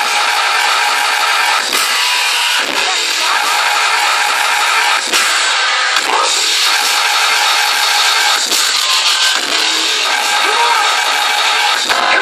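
Loud electronic dance music from a festival main-stage sound system, heard from within the crowd: a gritty, distorted synth bass line with beats, with the deep low end missing so it comes through harsh and rasping.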